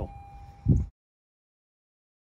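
A faint steady tone, then a single short, loud low thump just under a second in, after which the sound cuts off abruptly to dead silence.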